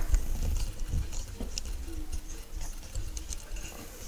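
Handling noise from a hand-held camera being turned: an uneven low rumble with a few faint clicks and knocks.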